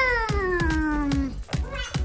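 A young child's long drawn-out vocal sound, one call sliding down in pitch over about a second and a half, over background music with a steady beat.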